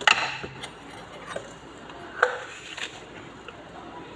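Several sharp knocks and clinks as kitchen items are handled and set down around a glass mixing bowl on a stone countertop, one near the start and others about a second apart, some with a brief glassy ring.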